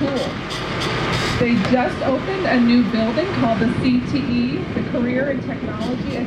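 A person talking indistinctly, the voice continuing throughout, over a steady background noise.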